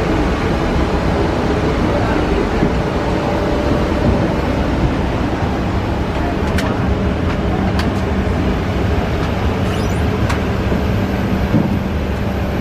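Steady, loud rush and hum of air-conditioning airflow in a parked Boeing 737-800 during boarding, with a few sharp clicks in the second half.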